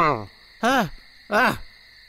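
Owl-like hooting: two short pitched hoots, each rising and falling, a little under a second apart, part of an evenly repeating series.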